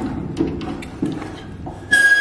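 Stainless steel filter plates and the clamping screw of a plate-and-frame filter being handled and set in place: a few light metal clicks and knocks.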